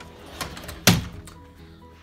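A closet door being shut: a brief rush of movement about half a second in, then a single loud thud just before one second.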